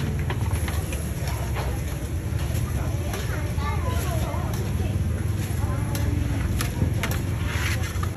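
Busy market-stall ambience: a steady low rumble with indistinct voices in the background. Scattered light clicks of steel tongs on an aluminium tray come through as cakes are picked up, with a brief plastic-bag rustle near the end.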